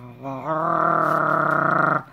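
A woman growling in frustration: one long, low growl held steady for about a second and a half from half a second in, then cut off abruptly.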